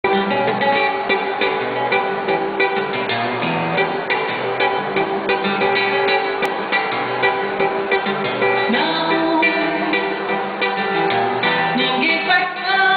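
Nylon-string acoustic guitar (violão) played solo through a PA, a samba introduction with plucked melody and chords.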